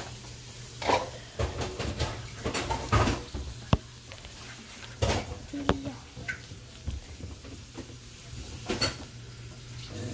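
Irregular knocks, taps and rustling from things being handled close to the microphone, with a few sharp clicks.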